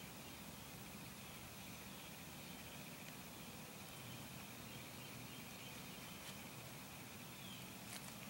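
Faint outdoor background: a steady hiss with a faint, steady high-pitched drone running through it, and no distinct sounds standing out.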